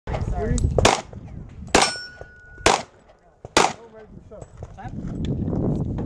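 Four pistol shots from a Glock 30 subcompact .45 ACP, evenly spaced a little under a second apart. A brief ringing tone follows the second shot.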